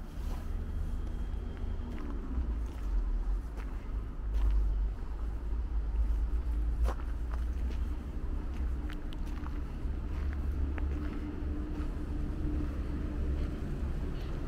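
Outdoor city ambience: a steady low rumble of road traffic, with scattered light clicks of footsteps on snow.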